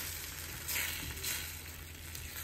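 Scrambled eggs sizzling in butter in a carbon steel pan, the sizzle swelling louder about a second in as they are worked in the pan.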